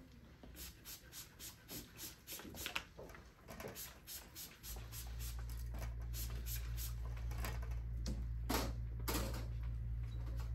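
Hand-held trigger spray bottle misting water onto hair, a quick run of short sprays about three a second, then a few more spaced out. A steady low hum starts about five seconds in and keeps going.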